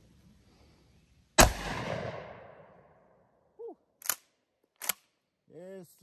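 A single pump-action shotgun blast firing double-aught buckshot, with a rolling echo that fades over about a second and a half. About three seconds later come two sharp clacks, the pump being worked to chamber the next shell.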